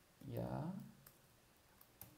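A few faint computer keyboard keystrokes in a quiet stretch, the last of them near the end.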